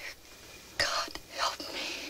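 A person whispering a few short, breathy words in two bursts, about a second apart.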